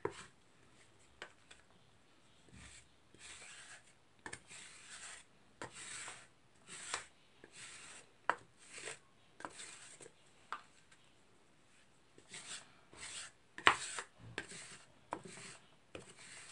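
Plastic spatulas scraping and spreading half-frozen chocolate ice cream mixture across the metal cold plate of a rolled-ice-cream maker, in a series of short rasping strokes. There is one sharp knock near the end.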